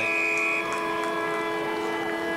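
Football ground siren sounding the end of the half: a steady, held horn tone made of several pitches, with a higher tone over it briefly at the start.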